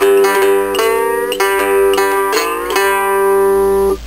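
Three-string cigar box guitar in GDg open tuning playing one bar of a 12-bar Delta blues rhythm: a repeated pattern of plucked notes over ringing open strings. It stops right at the end.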